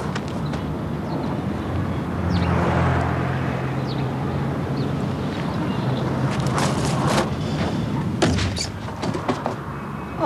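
A motor vehicle's engine running steadily, swelling briefly about two seconds in, with a few sharp knocks and clicks in the second half.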